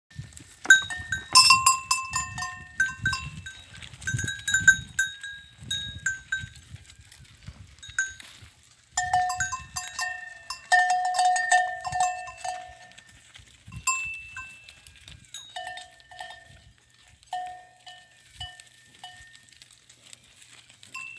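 Metal livestock bells clanking irregularly as the animals wearing them move. At least two bells of different pitch ring in uneven runs, with a short lull partway through.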